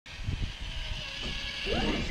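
Electric motor and gear whine of a Traxxas TRX-4 RC rock crawler climbing onto a rock pile, with low knocks of its tyres and chassis against the rocks near the start.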